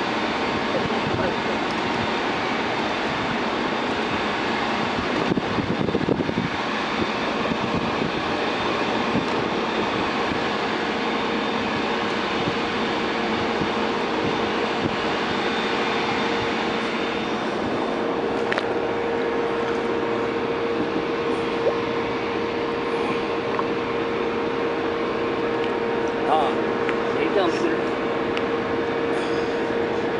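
Steady running noise of a fishing boat's engine mixed with wind and water noise, with a steady hum that becomes clearer about eight seconds in.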